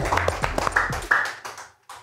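Two people clapping their hands in quick, uneven claps, with a short musical tone behind them. The clapping fades out about a second and a half in.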